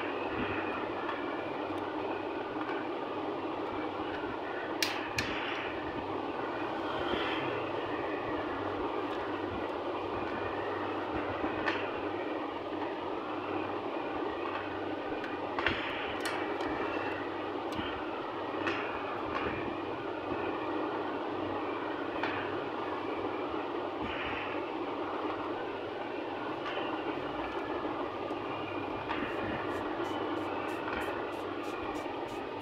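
Steady rushing background noise with scattered light clicks and knocks as the plastic halves and drum of a laser toner cartridge are handled.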